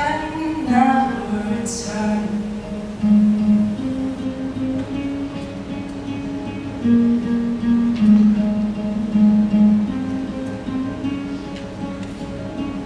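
Acoustic guitar playing an instrumental passage of chords and held notes between sung lines.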